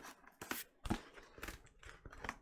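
Scissors cutting into a cardboard record mailer: several short, sharp snips.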